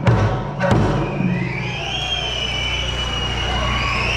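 Eisa drum-and-sanshin music closing on a last drum stroke under a second in, then a long, high finger whistle that glides upward and holds, over crowd noise.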